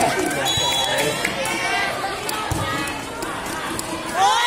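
Spectators and players at an outdoor volleyball match talking and calling out together, a loose mix of voices, with a few sharp knocks. The voices grow quieter in the second half.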